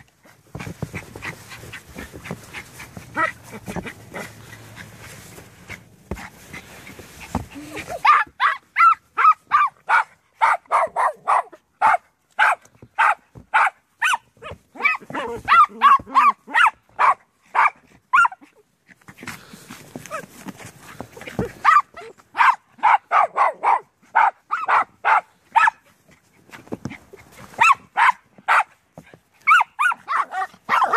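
Small papillon dogs barking in rapid runs of short, sharp barks, about three a second, excited at a snow shovel. The barking is preceded by several seconds of rustling, scraping noise.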